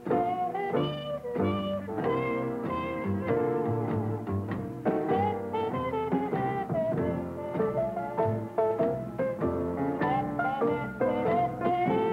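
Jazz trumpet solo played with a plunger mute, with bending, voice-like notes, over a swing rhythm section.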